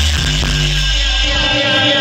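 Dub reggae played loud through a sound system. The pulsing bassline drops out, leaving a held low note and a falling tone.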